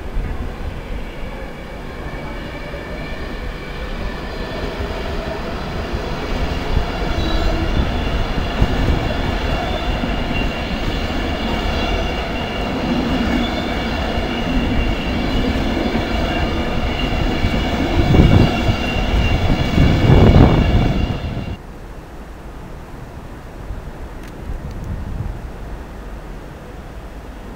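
Virgin Class 390 Pendolino electric train rolling slowly past over station pointwork: a steady whine of several tones from its electric traction over the rumble and clatter of its wheels. It grows louder to a peak of heavy rumbling near the end, then cuts off abruptly to quieter background noise.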